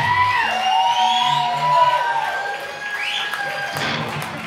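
A live rock band's song ends with a last hit just as it begins, and the audience cheers and whoops, with long wavering high calls over the cheering.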